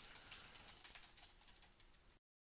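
Faint computer keyboard typing: a quick run of light key clicks, several a second.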